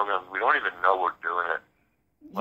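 Speech only: a voice talking, with a short pause near the end.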